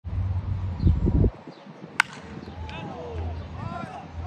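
A baseball bat cracks against a pitched ball once, about two seconds in, a single sharp impact. Voices call out after it, over a low rumbling that is loudest in the first second.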